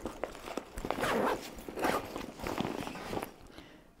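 Zipper on a recycled-plastic fabric backpack being pulled in a few short rasping strokes, with the bag's material rustling and a few small clicks, fading near the end.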